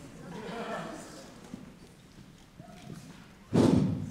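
Stage microphone and stand being adjusted and handled: faint rustles and small knocks, then a sudden loud half-second burst of noise straight into the microphone near the end.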